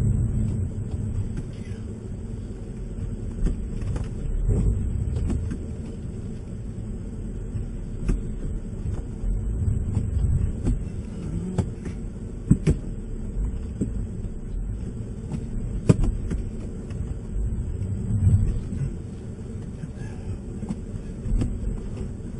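A car's engine rumbling from inside the cabin, rising and falling as the driver applies power while the drive wheels, on worn tires, spin without grip in snow. A few sharp knocks come through now and then.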